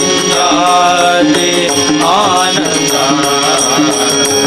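Bhajan music with tabla keeping rhythm and a harmonium melody, over the steady ringing of small hand cymbals, with a wavering melodic figure about halfway through.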